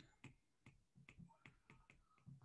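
Near silence with faint, irregular light clicks, a few a second: a stylus tapping and scratching on a tablet screen while a word is handwritten.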